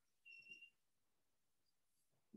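Near silence: room tone, with a faint, brief high-pitched tone about half a second in.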